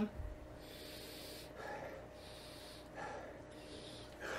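A man sniffing a glass of hazy double IPA to take in its aroma: two long, faint sniffs through the nose about two seconds apart, each followed by a short breath out.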